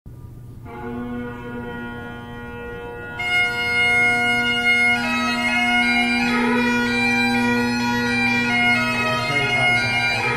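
McCallum Great Highland bagpipe with Canning drone reeds striking in: the drones sound first as a steady low hum, and the chanter joins about three seconds in, moving between held notes over the drones.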